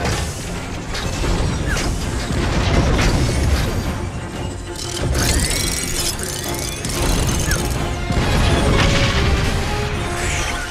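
Sci-fi film sound mix: a music score under heavy booms and mechanical sound effects as small repair droids launch from hull hatches into a space battle, with sweeping high whines about five seconds in.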